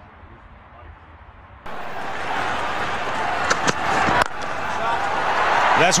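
Cricket broadcast sound cutting in suddenly: crowd noise, with two sharp cracks about halfway through of a bat striking the ball for a four. The crowd noise swells toward the end as the commentator calls it well struck.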